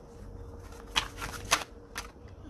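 A tarot deck being shuffled, with two sharp snaps of the cards about a second in and again half a second later.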